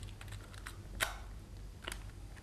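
A few short, sharp clicks, the loudest about a second in, over a low steady room hum.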